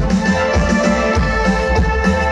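Live band playing an instrumental passage with keyboards, electric guitar and drum kit, keeping a steady beat.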